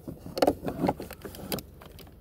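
Handling noise of a phone being moved and propped against a car's steering wheel: a few soft irregular knocks and rubs.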